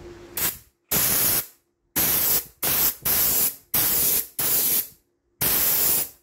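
Coilhose chrome air blow gun with a safety nozzle, triggered in a rapid series of about eight short blasts of compressed air, each a hiss of roughly half a second with a sharp stop. The air flow is extremely strong.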